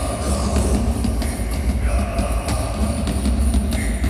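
Black metal band playing live, heard from within the crowd: a dense wall of distorted electric guitars over drums, with a heavy low rumble.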